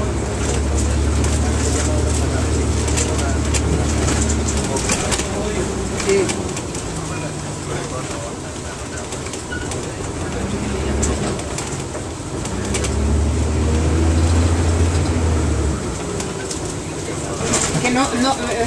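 Inside a 1999 NovaBus RTS transit bus: the diesel engine's low drone swells as the bus pulls, once for about four seconds at the start and again for about three seconds near the end. Light clicks and rattles from the cabin come and go throughout.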